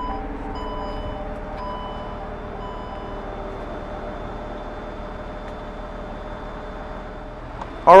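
2015 Jeep Cherokee's power liftgate closing: a steady motor hum, with a warning beep sounding about once a second for the first few seconds as the hatch comes down.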